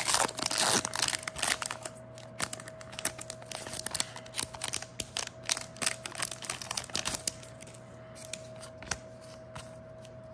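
A foil Pokémon booster pack wrapper is torn open within the first second, then crinkles in a run of crackles as it is handled. The crinkling thins out and gets quieter near the end.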